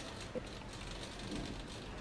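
Small hobby servo motor faintly chattering through its plastic gears as it turns the solar tracker's mount toward a torch beam, with a small click about a third of a second in.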